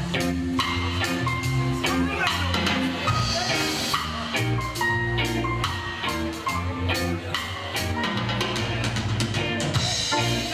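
Live band playing a reggae instrumental passage on drum kit, bass, electric guitars and keyboard, with a steady drum beat.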